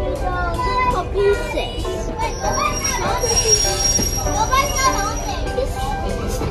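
Passenger train coaches rolling slowly past with a low rumble, and a steady high-pitched wheel squeal for about three seconds in the middle, mixed with children's voices.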